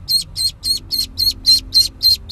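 A duckling peeping rapidly: short, high, evenly spaced peeps, about four a second.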